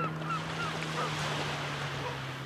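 Steady noise of the sea and wind at the shoreline, over a constant low hum. A bird's short call repeats about four times a second, fading out about a second in.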